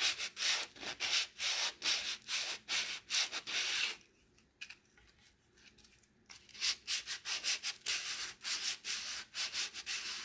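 Folded sheet of 150-grit sandpaper rubbed by hand over a wooden salad bowl in quick back-and-forth strokes, a scratchy rasp at about three strokes a second, taking off the old varnish. The strokes stop for about two seconds midway, then resume.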